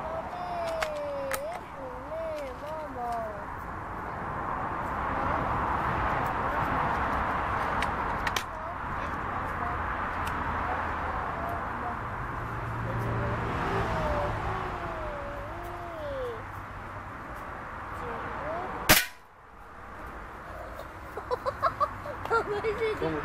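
A single shot from a Hatsan 125 Sniper Vortex gas-ram air rifle, one sharp crack near the end, with the pellet striking the steel pot target; it hits without cleanly piercing the pot.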